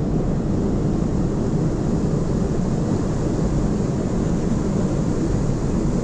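Steady, loud rush of water pouring out through a dam's gates into the river below.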